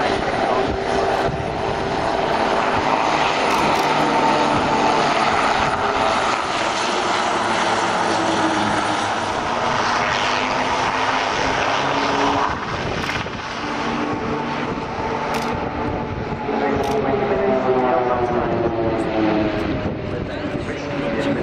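Nine Pilatus PC-7 turboprop trainers flying over in close formation: the combined drone of their Pratt & Whitney PT6A turboprop engines and propellers, its pitch falling near the end as the formation passes.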